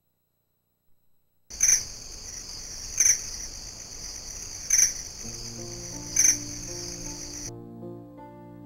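A steady high-pitched insect trill starts about a second and a half in. It swells to a louder chirp four times, about a second and a half apart, and cuts off suddenly shortly before the end. Soft, slow music fades in underneath about five seconds in.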